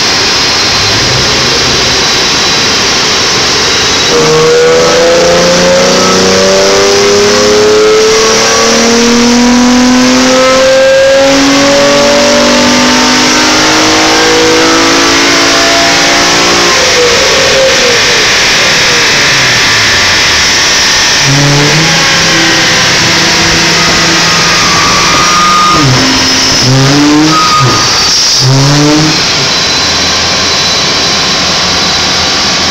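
Nissan G35's 3.5-litre V6 making a full-throttle pull on a chassis dyno. The revs climb steadily for about thirteen seconds, then fall away as the throttle is lifted, followed by several quick blips of the throttle near the end.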